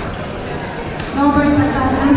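Hubbub of a busy sports hall with a sharp tap about halfway through, then a single voice calling out in a long, drawn-out tone, louder than the background.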